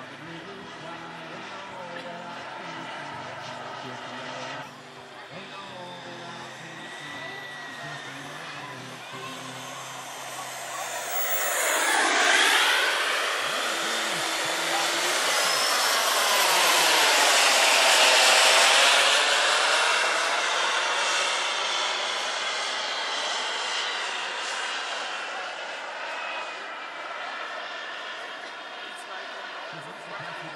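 Model turbine jet engines of a 1/16-scale RC Airbus A330-300 making a flypast: a steady jet rush and whine that swells to its loudest about twelve seconds in, with a sweeping tone as the plane passes overhead. It stays loud for several seconds, then slowly fades as the model flies away.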